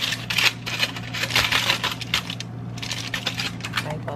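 Aluminium foil crinkling and crackling as it is pulled back and crumpled by hand, in dense bursts of sharp crackles with a short lull about two and a half seconds in.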